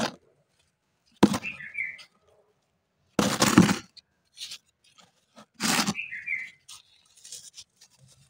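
Hard, dry balls of clay soil and sand crunching and crumbling as rubber-gloved hands crush them over loose soil. The sound comes as separate bursts, four louder ones about every two seconds, with quiet pauses between.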